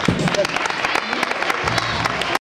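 Scattered hand clapping from a small crowd as a gymnastics routine ends, with a short shout of a voice near the start.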